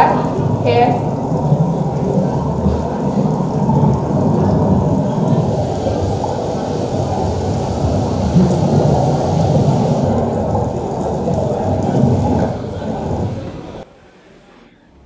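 Soundtrack of an underwater scuba-diving video played through a room's loudspeakers: a steady, low rushing water noise that fades and cuts off about a second before the end as the video stops.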